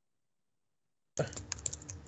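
Dead silence for the first half, then a quick run of computer keyboard keystrokes starting a little past halfway, as a search query is typed.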